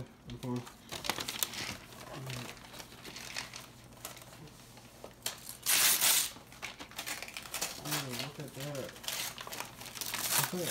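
Gift wrapping paper being torn and crumpled as a present is unwrapped: a run of crackling rustles, with a louder, longer tear about six seconds in.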